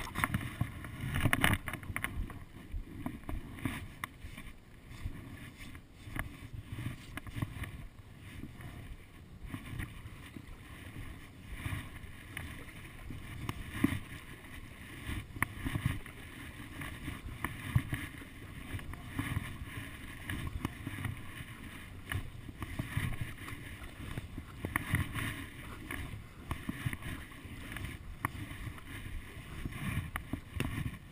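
Paddle strokes and water splashing and lapping against a stand-up paddleboard on calm water, coming and going unevenly, with some wind on the microphone.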